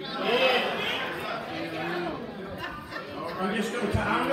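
Speech: a man preaching over a microphone in a large room, with other voices chattering underneath.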